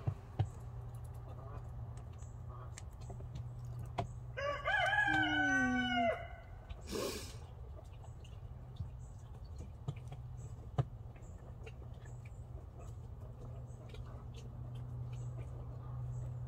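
A rooster crows once, about four seconds in: a single call of about two seconds that rises and falls in pitch. A short noisy burst follows about a second later.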